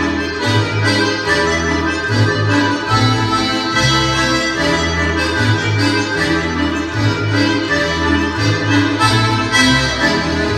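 Lively Russian folk dance tune led by an accordion, a busy melody over a bass line that steps along in a steady pulse.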